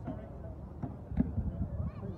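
Weapons knocking against wooden round shields in a reenactment fight: a couple of sharp knocks about a second in, the second the loudest, amid shouting and talking voices.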